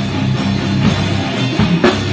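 Groove metal music: a low, chugging distorted electric guitar riff over a drum kit, with a sharp drum hit near the end.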